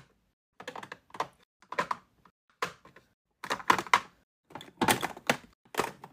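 Small plastic blush jars and compacts clacking and tapping against each other and a clear acrylic organizer drawer as they are set in place: a string of short clicks in little clusters with brief pauses between.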